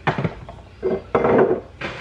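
Kitchenware being handled on a counter: a sharp knock at the start, then a spell of clatter and rustling, and a short knock near the end.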